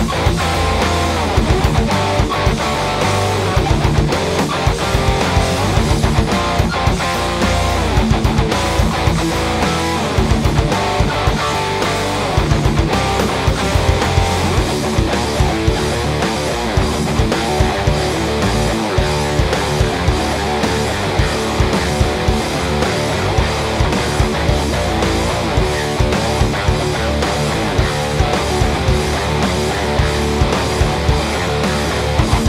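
A Mensinger Foreigner electric guitar, tuned to drop D, playing a riff-based piece over a backing track with a steady drum beat.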